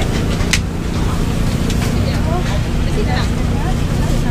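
Outdoor market ambience: indistinct voices of people around the stalls over a steady low rumble and hum, with a single sharp click about half a second in.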